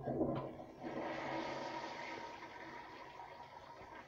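1951 Kohler Penryn toilet flushing: the water comes in suddenly and is loudest in the first second, then rushes on steadily and slowly fades.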